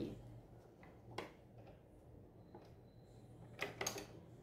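Faint handling sounds at a sewing machine: a few light clicks and taps as fabric is positioned under the presser foot, one about a second in and a quick cluster near the end, over a low steady hum.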